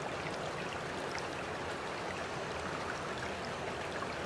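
Steady trickling, running water, an even rush without breaks.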